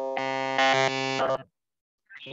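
A loud buzzing tone with many even overtones that cuts off after about a second and a half. It is audio interference coming through a participant's line on a video call.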